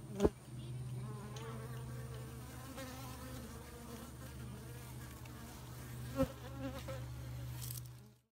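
Honey bees buzzing at the hive entrance: a steady hum, with the drone of single bees flying close rising and falling in pitch as they pass. Two sharp taps stand out, one a quarter second in and one about six seconds in.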